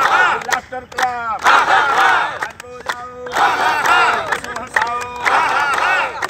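A group of people laughing and calling out loudly together while clapping their hands, a laughter-club exercise of deliberate group laughter. The voices come in waves with several long held shouts, and sharp hand claps fall between them.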